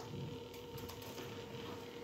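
Quiet room tone: a faint steady hum with a few soft ticks.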